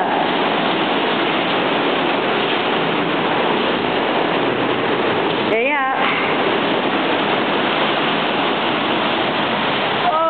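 Steady, loud roar of a waterfall in spate, the Black Linn Falls on the River Braan, heard from a balcony close above. A short high-pitched voice cuts through about halfway through.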